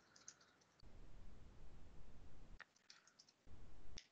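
A few faint computer keyboard and mouse clicks as a link is entered into a chat, with two stretches of low muffled noise between them.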